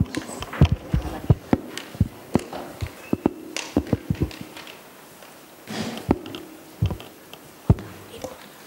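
A run of irregular light knocks and taps, some sharper than others, over faint room noise.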